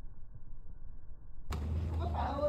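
Muffled low rumble of outdoor background noise. About one and a half seconds in it changes abruptly to a louder, fuller sound with a low hum, and a voice begins.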